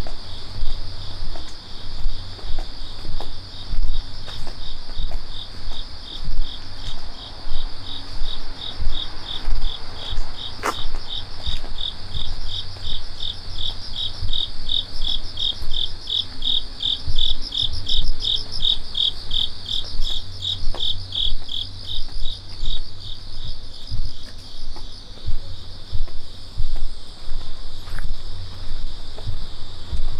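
Insects chirping in an even, rapid pulse train, louder in the middle and fading near the end, over the low thuds of a walker's footsteps.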